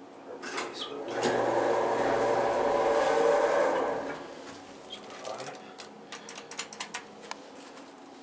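Elevator car doors sliding open, the door mechanism running as a loud, steady rumble for about three seconds. It is followed by a quick run of sharp clicks.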